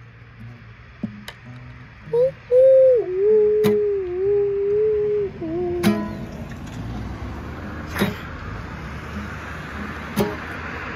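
Acoustic guitar strummed sparsely, a few separate strums a second or two apart. Between them a voice holds one long wordless note with a wavering pitch for about three seconds, the loudest sound here.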